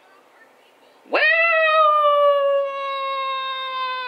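A woman's long, loud "Woo!" whoop, starting about a second in. Her voice swoops sharply up, then holds one drawn-out note that slides slowly down in pitch and eases off a little halfway through.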